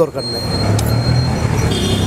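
A road vehicle's engine running as it passes, a steady low rumble with road noise.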